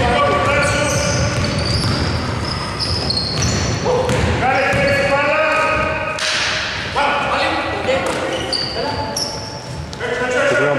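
Live basketball game sounds in an echoing gym: a basketball bouncing on the hardwood floor, sneakers squeaking, and players' voices calling out.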